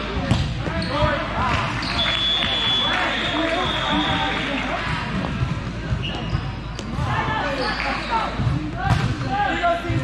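Busy gym hubbub: many overlapping voices of players and spectators, with sharp thuds of volleyballs being served, hit and bouncing on the hardwood floor. A brief high steady tone sounds about two seconds in.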